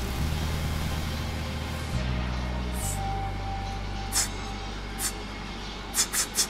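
Electronic sound effect: a steady low hum that steps to a new pitch twice, with a hissing whoosh over the first two seconds and a thin held tone in the middle. A few short hisses come near the end.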